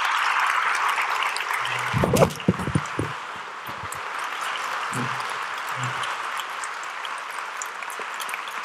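Audience applauding, loudest in the first two seconds and dying down somewhat after about three. A few close thumps and rustles come on the microphone about two seconds in.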